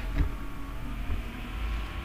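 Steady low background rumble, with a brief soft thump shortly after the start.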